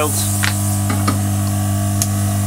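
Hot-air heating tool blowing steadily: a hum with a hiss, with a few faint ticks of metal tweezers.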